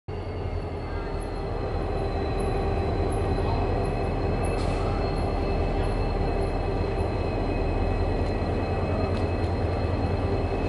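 G-class and XR-class diesel-electric freight locomotives running, a steady low engine rumble with a thin high whine over it, growing louder over the first two seconds.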